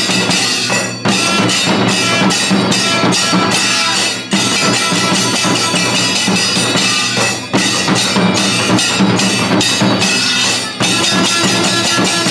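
Kailaya vathiyam temple ensemble playing loudly: double-headed barrel drums and clashing hand cymbals beat a fast, dense rhythm while a brass horn sounds over them. The sound dips briefly about every three seconds between phrases.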